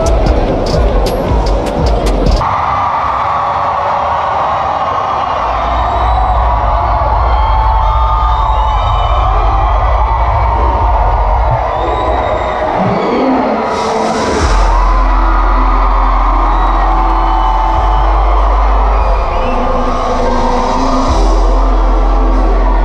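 Loud amplified music at a live concert, with a heavy deep bass, heard through crowd noise and cheering. The sound changes abruptly about two seconds in, and the bass swells about halfway through.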